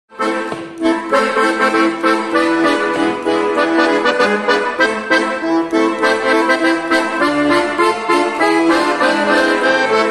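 Cav. Della Noce piano accordion playing a lively tarantella, a quick melody on the treble keys over the bass, with fast note changes; it starts a moment in.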